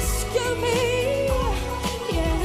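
Female pop vocal over a dance-pop backing track with a steady bass beat: she holds one sung note with a slight waver, letting it fall away about a second and a half in.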